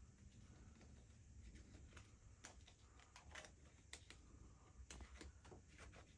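Near silence with faint scattered clicks and taps as a small torch is handled and its cap is fitted and screwed on.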